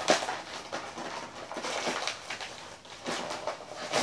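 A yellow padded paper mailer envelope being opened and handled by hand, giving irregular scratchy crinkling and rustling with a sharp crackle at the start.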